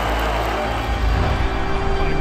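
Dramatic background music with a sustained low bass.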